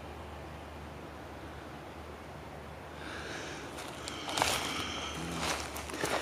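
Footsteps rustling and crunching through dry leaf litter on a forest floor. They start about halfway in after a quiet stretch, with a few sharper crackles near the end.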